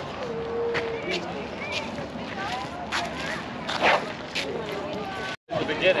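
Playground background: scattered voices of children and adults, none of them close, over steady outdoor noise. The sound cuts out for a split second near the end.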